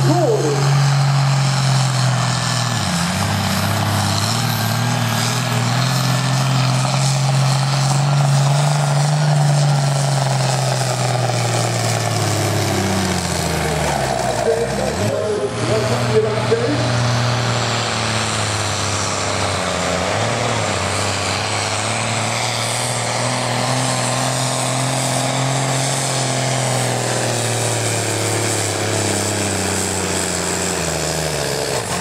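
Diesel engines of farm pulling tractors running at high revs under load throughout. About halfway through, the engine note drops and climbs back up.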